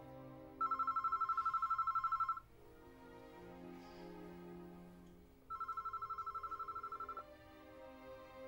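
An electric bell ringing twice, each a rapidly pulsing trilling ring of nearly two seconds, about three seconds apart, over soft background music.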